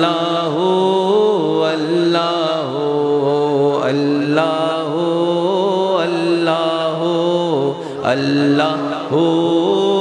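A man chanting a melodic Islamic zikr through a public-address system, in long sung phrases that rise and fall in pitch. There is a brief break just before eight seconds.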